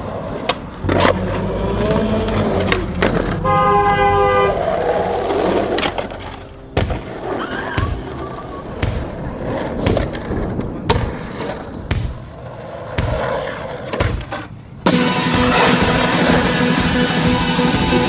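Skateboard on concrete: wheels rolling, with a string of sharp snaps and landing slaps as tricks are done and the board scrapes along a concrete ledge. About three seconds before the end, loud guitar music cuts in.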